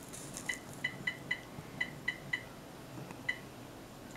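Short electronic beeps from an MRI control keypad as its buttons are pressed: about eight quick beeps, all at the same high pitch, at uneven spacing, the last one near the end.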